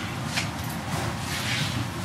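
Steady background noise in a pause between speech: a low hum under an even hiss, with a faint rustle about a second and a half in.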